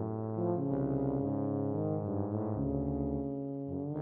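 Two tubas holding long, low, overlapping notes, each shifting to a new pitch every second or so.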